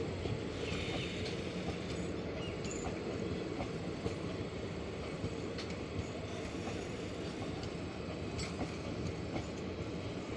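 Sleeper-class coaches of an Indian Railways express rolling past as the train departs a station: a steady rumble of wheels on rail, with scattered clicks over the rail joints and a brief wheel squeal about a second in.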